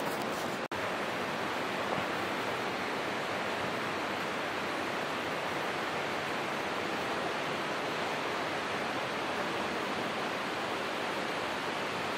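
Steady rushing of running water, even and unbroken, with a momentary dropout just under a second in.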